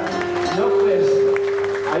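Live chamamé played on two accordions with guitar and bass, one long steady note held from about half a second in until near the end, with a man's voice over the band.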